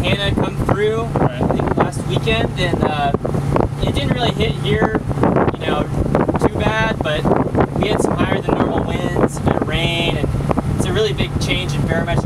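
People talking over the steady low hum of a boat's engine running.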